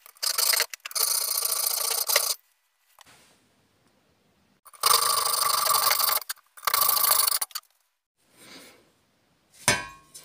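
A hand hacksaw rasps through the thin sheet-steel wall of a two-stroke expansion chamber held in a vice, cutting the pipe apart. It comes in runs of steady strokes lasting one to two seconds, with short pauses between them.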